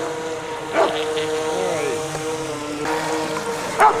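Motor of a radio-controlled speedboat running at a steady pitch as the boat skims across the water.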